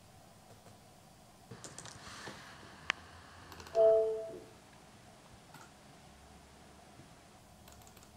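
Quiet typing and clicking on a laptop keyboard. Just before halfway, a short tone of two notes sounding together rings out, the loudest sound, and dies away within about half a second.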